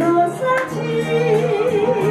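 A woman singing a held note with wide vibrato through a handheld microphone, over instrumental backing with steady low notes.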